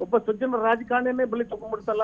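Speech only: a man talking steadily, his voice narrow and thin as if heard over a telephone line.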